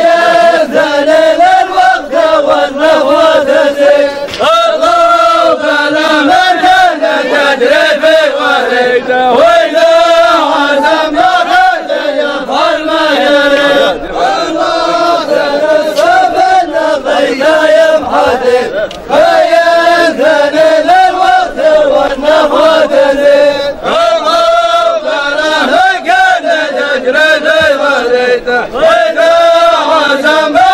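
A group of men chanting verses together in unison in a traditional Omani chant, a repeated melodic phrase that rises and falls without a break.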